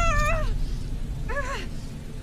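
A woman giving short, high, wailing cries of pain, one at the start and another just over a second in, over a low rumble.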